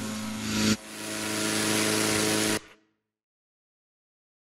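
Engine-driven inflator fan blowing air into a hot-air balloon envelope: a steady rush of air over a humming engine tone. Under a second in, the sound drops and swells back up, then it cuts off abruptly before the end.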